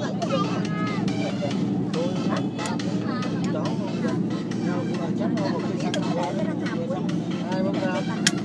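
Sleeper bus cabin on the move: the bus's engine and road noise make a steady low drone, with voices talking over it throughout and a few faint clicks.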